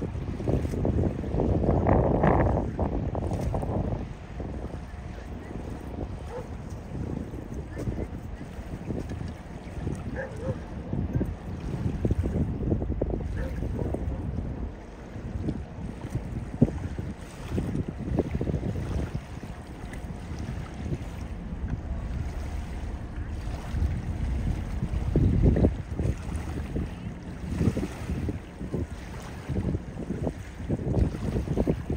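Wind buffeting the microphone: a low, rumbling noise that comes in gusts, loudest in the first few seconds and again near the end.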